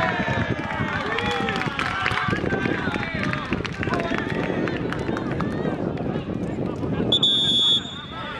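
Several men's voices shouting and calling out across a football pitch, then a single short, steady whistle blast near the end.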